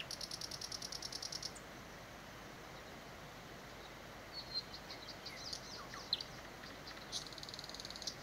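A small bird's rapid, high-pitched trills, one at the start and another near the end, with scattered high chirps between them, over a faint steady rush of flowing water.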